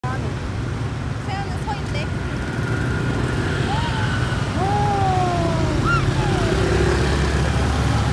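Street traffic heard from a moving cyclo: a steady low rumble of passing cars and motorbikes and road noise, growing a little louder near the end, with scattered voices in the middle.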